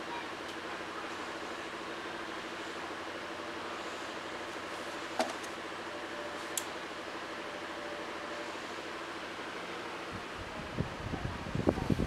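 Electric fan running steadily with a constant hum. Two faint clicks come in the middle, and a low rumble of handling noise comes near the end.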